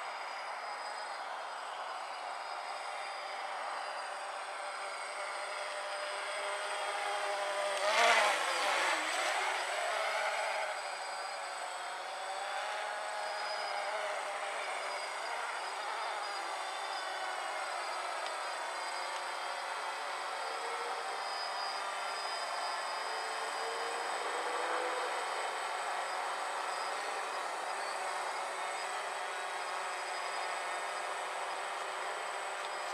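DJI Phantom quadcopter buzzing in flight, its four propellers and motors giving a whine of several tones that drift up and down in pitch as it manoeuvres. It is loudest for a couple of seconds about eight seconds in, with the pitch swinging sharply.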